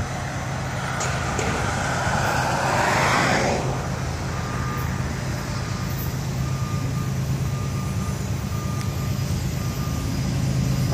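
A road vehicle passing close by: its tyre and engine noise swells over about three seconds, peaks and fades. Under it is a steady low rumble of traffic and distant engines.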